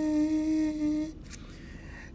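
A man singing a French prayer unaccompanied, holding one long, steady note at the end of a sung line until it fades about a second in, followed by a quick breath.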